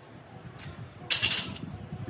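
Barbell bench-press workout noise: a sharp burst of noise about a second in, with low thumps and knocks around it.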